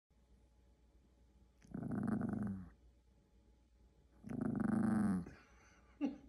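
Yorkshire terrier growling twice, each growl about a second long with a slight drop in pitch at the end: one a little under two seconds in, the other past four seconds.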